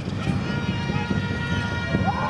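Indoor basketball arena during live play: steady crowd noise with footfalls and a ball bouncing on the hardwood court.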